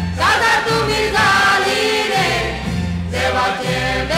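Konkani song: voices singing a melody over band accompaniment with a bass line that shifts note about once a second.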